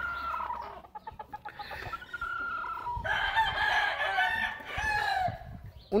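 Gamecock roosters crowing: a long crow trailing off in the first second, another held crow about two seconds in, then several crows overlapping from about three to five seconds.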